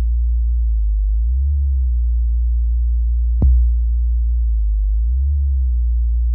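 808 sub-bass playing on its own: a long, deep, steady note with a sharp click at its attack, struck again about three and a half seconds in.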